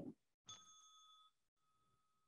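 A small timer bell rung once, heard faintly over a video call: a ding about half a second in that rings on and fades. It is the signal that a speaker's time is up.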